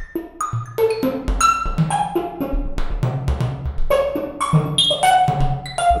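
A drum and percussion pattern with short pitched notes, played through a homemade steel plate reverb driven hard enough that the amplifier driving the plate overdrives, giving a crushed, distorted reverb.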